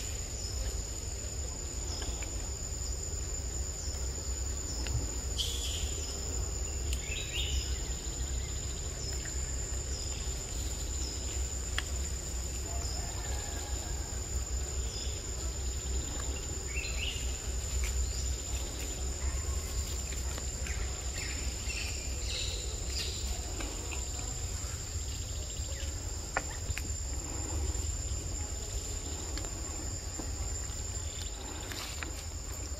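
Forest ambience: insects keep up a steady, high-pitched drone, with scattered short bird chirps and a constant low rumble underneath.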